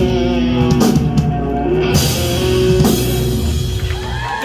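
Live rock band playing loudly on drum kit, electric bass and electric guitar, with held chords ringing over the drums: the final bars of the song.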